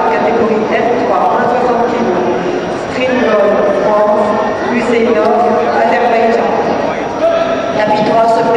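Men's voices talking almost without a break, nearby spectators or the hall around them.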